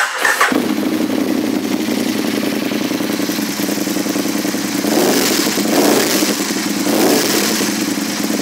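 A 2007 Aprilia Tuono 1000's 1000cc V-twin, fitted with an aftermarket slip-on exhaust, cranks briefly and catches within the first half second, then settles into a throaty idle. It is revved lightly a few times in the second half.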